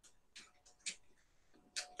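Near silence broken by three faint, short clicks spread across the two seconds.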